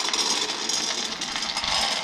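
Shelled corn kernels poured out of a plastic tub, a dense, steady rattle of many small dry clicks that dies away at the end: a weighed 250-gram sample being poured for a grain moisture test.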